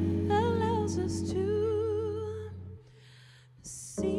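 A live jazz-soul band: a woman sings long notes with a wide vibrato over electric bass, Fender Rhodes and drums. About three seconds in the music drops away to a brief hush. A short hiss follows, and the full band comes back in at the end.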